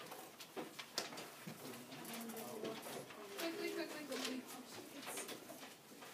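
Low murmured voices and the rustle of quiz papers being passed forward, with a few light knocks in the first second or so.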